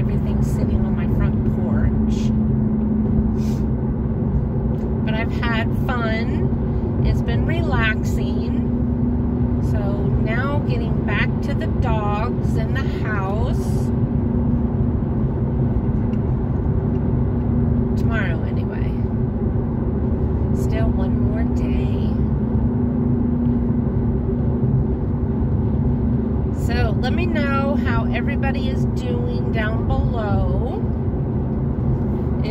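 Steady road and engine drone inside a moving car's cabin, with a low hum that holds one pitch throughout. A person's voice comes and goes over it several times without clear words.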